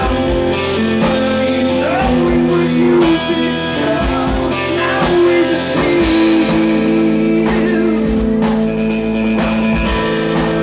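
Live rock band music: a man singing over electric guitar and keyboard, with held chords and a steady beat.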